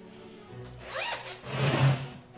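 Zipper on a bag being pulled in two strokes: a short rising zip about a second in, then a longer, louder zip near the end.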